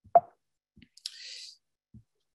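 Mouth sounds in a pause between sentences: a short wet lip smack or tongue click just after the start, then a brief hissy breath about a second in.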